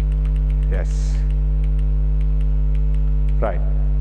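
Steady electrical mains hum, a loud low buzz with many evenly spaced overtones, along with faint regular ticking about five times a second.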